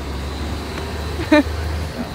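Road traffic with a steady low engine rumble that cuts off near the end, and a short burst of a voice a little past a second in.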